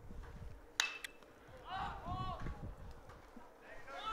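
A metal baseball bat striking a pitched ball about a second in: one sharp crack with a brief ringing ping, hit as a high pop-up. Distant voices shout and call out a moment later.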